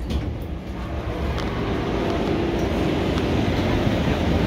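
Deutsche Bahn ICE train standing at an underground platform, giving off a steady running noise with a strong low hum. It swells over the first two seconds, then holds.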